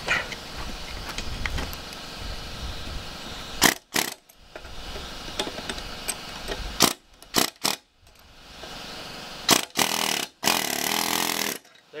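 Pneumatic air hammer with a flat chisel bit hammering on the split steel inner sleeve of a leaf spring bushing, folding its edges over to drive it out of the spring eye. It runs in several short bursts with brief pauses between them, the longest burst near the end.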